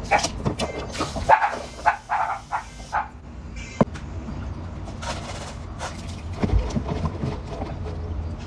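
Kitchen handling noises: a sink tap runs briefly about a second in, then a stainless steel bowl is knocked and handled on the counter, with scattered clicks and one sharp knock a little before halfway.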